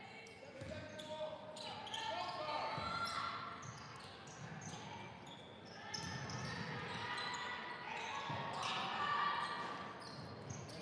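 Voices of players and spectators echoing in a large gymnasium, with a basketball bouncing on the hardwood court now and then.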